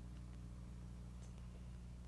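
Quiet room tone: a steady low electrical hum with faint hiss and a few faint ticks.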